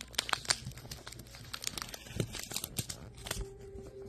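Crinkly rustling of paper or plastic, a stream of small sharp crackles, with a dull knock about three and a half seconds in.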